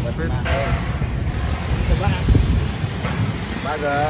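Continuous low rumble of street traffic, with brief snatches of people talking near the start, around two seconds in, and just before the end.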